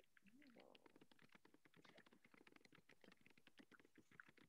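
Faint, rapid keystrokes on a computer keyboard as a sentence is typed.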